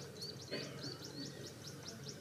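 Faint, high-pitched chirping: a steady run of short rising chirps, about five a second.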